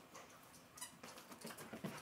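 Faint patter of a Brittany's paws running across a carpeted floor, a scatter of soft ticks.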